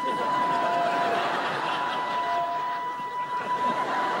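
A thin, steady whistling tone blown on an oversized prop bamboo flute (suling), held for about four seconds with a brief break about a second in, and a lower second note sounding with it through the middle; a small sound for so big an instrument. Light chuckling from the audience underneath.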